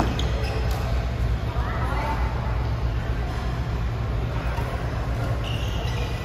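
Badminton doubles play on an indoor court: a racket hitting the shuttlecock near the start, then players' voices and a short high squeak near the end, over a steady low hum.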